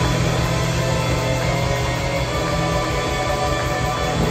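Live rock band playing: electric guitars over drums, with a steady low note held underneath.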